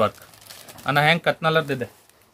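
Speech: a person's voice saying a couple of short words about a second in, with quiet room tone before and after.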